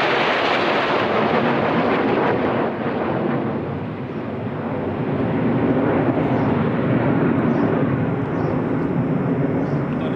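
The Red Arrows' nine BAE Hawk jets fly over in formation with a loud jet roar. The roar dips about three seconds in, swells again and then drops away at the end.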